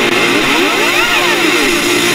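A synthesizer swoop in a rock band track: one pitched sweep that rises to a peak about halfway through and falls back down, over the continuing band.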